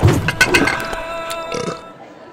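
A cartoon burp sound effect, loudest right at the start, from a character who has overeaten, over steady background music.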